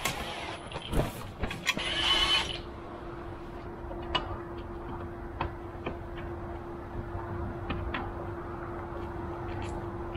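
Cordless drill driving screws into a plastic fish finder mount, its motor whining in short runs for about the first two and a half seconds. After that come only a few light clicks of parts being handled, over a steady hum.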